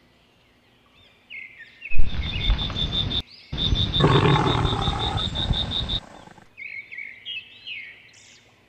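Lion roaring: two loud roars starting about two seconds in, the first about a second long and the second about two and a half seconds, with a short break between them. Faint bird chirps sound before and after.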